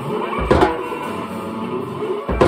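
Electric guitar and drum kit playing together live: held, ringing guitar notes under the drums, with one loud bass-drum-and-cymbal hit about half a second in.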